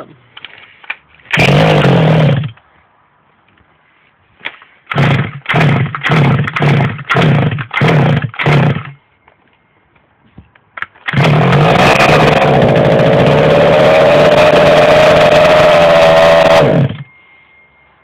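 The small two-stroke petrol engine of a Shengqi Hummer RC truck is being restarted. It fires once briefly, then catches in six short bursts over about four seconds. It finally runs for about six seconds before cutting off suddenly.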